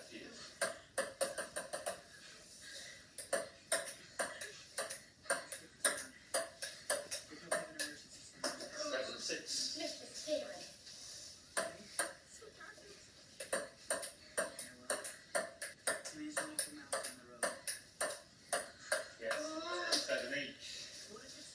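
Table tennis rally on a wooden kitchen table: the ball ticks back and forth between paddle and table in quick runs of sharp clicks. There are a couple of short breaks in the play.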